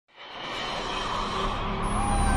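A noisy whoosh swelling up from silence, the opening of an intro jingle that carries on as music.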